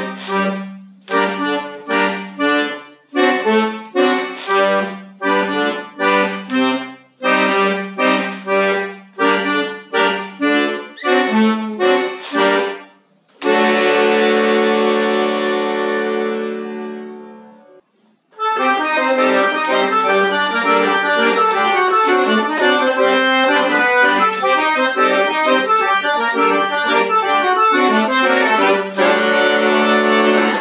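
Piano accordion playing bass and chord buttons in a forró rhythm, short punchy chords about twice a second, ending on a long held chord that fades away. After a short pause, about 18 seconds in, it plays on continuously with a right-hand melody over the bass.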